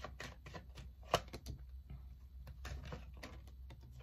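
A tarot deck being shuffled and handled by hand: a run of soft, irregular card clicks and slaps, with one sharper snap a little after a second in.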